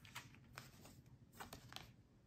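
Faint handling of a tarot card: a few soft clicks and slides as the card is picked up from a wooden table and turned over.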